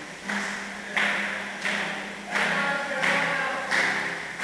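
Rhythmic beats from a group, a sharp hit about every two-thirds of a second, over a steady low held tone, ringing in a large church hall.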